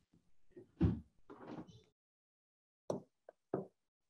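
A low thump about a second in, then three short knocks or clicks near the end, heard through a video call's gated audio.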